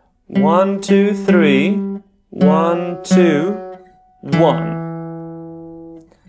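Acoustic guitar picking a short single-note riff on the D string at the 5th, 4th and 2nd frets, with a voice going along with the first notes. The last, 2nd-fret note rings out and slowly fades from about four seconds in.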